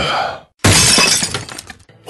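A sudden crash of shattering glass, a sound effect in the dance track, coming about two-thirds of a second in after a brief drop-out and trailing off in tinkling over about a second.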